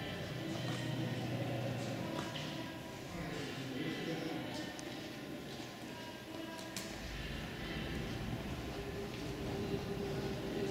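Indistinct background voices of people talking, echoing in a large exhibition hall, with no one voice clear.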